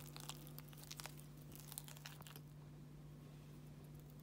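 Metal fork stirring soft mashed potatoes in a bowl: faint squishes and light scrapes for the first two seconds or so, over a low steady hum.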